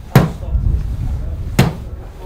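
Golf iron striking an artificial-turf hitting mat twice, about a second and a half apart, each a sharp thud, as short practice swings are made.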